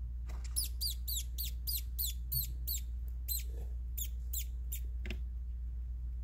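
Pinky mouse squeaking: a fast run of about a dozen short, high squeaks, each falling in pitch, about three a second, stopping about five seconds in. A single click follows, over a steady low hum.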